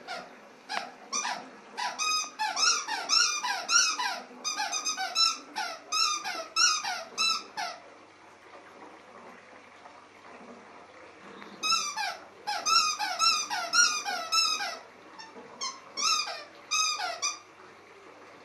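A dog's rubber squeaky toy ball being chewed, squeaking over and over, two or three squeaks a second, each squeak falling in pitch. One run of squeaks lasts about seven seconds, then after a pause of about four seconds a second run lasts about six.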